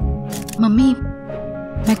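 Dramatic TV background score: sustained chords punctuated by sharp percussive hits. A brief voice sounds about half a second in, and a woman starts speaking at the very end.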